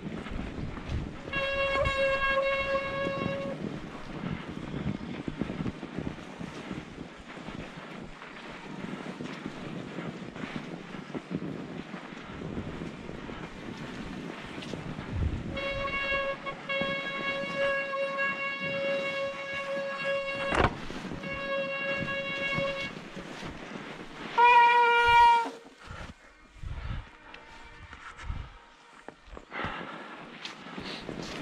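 Bicycle disc brakes squealing with a steady pitched tone in several stretches while braking on a descent on an e-mountain bike: a couple of seconds near the start, a long stretch with short breaks in the middle, and a short, loudest squeal about 25 s in. Under it runs a steady noise of tyres rolling over snow and wind, with one sharp knock about two-thirds through.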